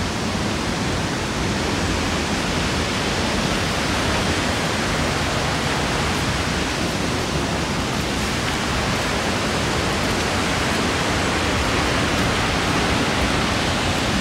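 Waterfall's falling water: a steady, even rush of noise with no breaks.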